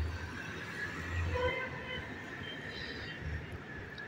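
A motor scooter's small engine running as it rides off across the car park, heard faintly from high above, with low rumble in the first second and a half. Short, faint high-pitched calls come and go in the middle.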